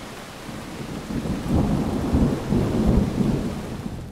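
Steady rain with a roll of thunder that builds about a second in and dies away near the end.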